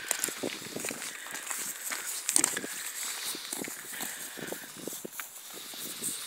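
Soft, irregular footsteps of Haflinger horses and people walking over grass and a gravel drive, with light rustling.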